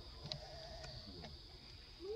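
Baby macaque giving a wavering, whimpering call that lasts about a second, with a few light clicks.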